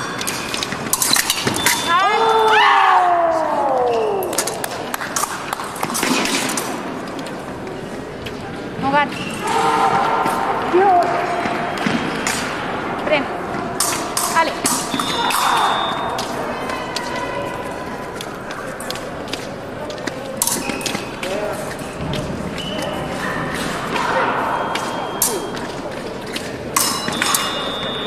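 Épée fencing on a piste: sharp clicks of blade contacts and footfalls. About two seconds in, a short steady electronic beep from the scoring machine marks a touch, followed by a long call falling in pitch. Voices from around a large hall come and go.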